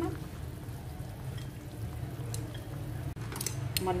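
Steady low rumble of a lit gas burner under a wok of simmering soup, with a few light clicks of cooking utensils against the metal wok in the second half.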